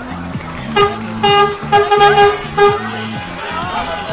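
Lorry horn tooting five short blasts in a quick rhythm, over background music.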